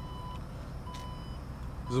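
2018 Porsche Cayenne power tailgate warning beeper sounding as the tailgate opens: steady electronic beeps about half a second long, repeating about once a second.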